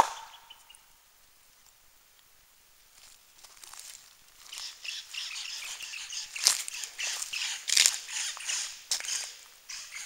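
A wood knock: one sharp strike of wood on a tree trunk, ringing briefly. After a few seconds of quiet, birds start chirping, busy and high-pitched, from about halfway through.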